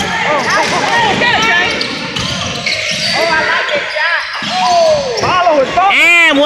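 Basketball game on a hardwood gym court: sneakers squeaking in many short rising-and-falling chirps, with a ball bouncing and players' voices calling out.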